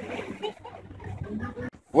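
Faint outdoor background with distant voices, cutting off suddenly just before the end.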